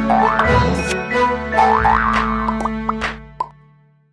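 Short animated-logo outro jingle: bright music with rising pitch swoops laid over it, fading out over the last second.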